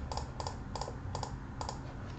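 Computer keyboard keys tapped in an even run of light clicks, about three a second.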